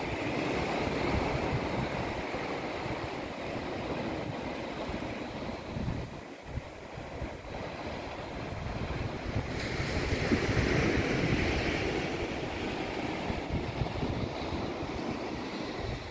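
Sea water washing against the shore below, with wind buffeting the microphone in a low gusty rumble. The wash swells louder about ten seconds in.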